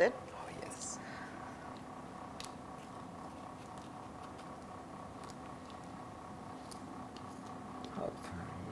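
Quiet kitchen with a steady faint hum and a few faint light taps. Honey-coated apple slices are being tapped into crushed biscuit crumbs and set on wire drying racks.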